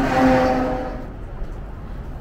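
A truck passing on the highway close by: steady engine hum and road noise that peak just after the start and fade away within about a second.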